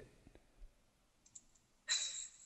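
A short gap in a conversation: near silence with a few faint clicks, then a brief breathy burst near the end.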